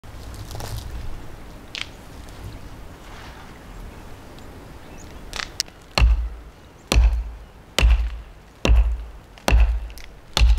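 A hatchet chopping into the trunk of a standing sapling: five sharp, heavy strikes, about one a second, starting about six seconds in.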